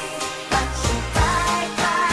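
Pop song playing: a steady drum beat under synth chords, with a sung melody.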